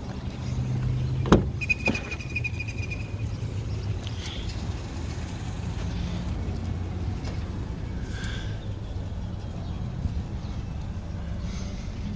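The driver's door of a 2017 Buick Encore is unlatched and swung open, with a sharp click about a second in, followed by a short, high electronic tone lasting about a second and a half. A steady low rumble runs underneath.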